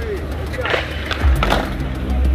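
Skateboard wheels rolling on concrete with a steady low rumble, and sharp clacks of the board about two-thirds of a second in and again about one and a half seconds in.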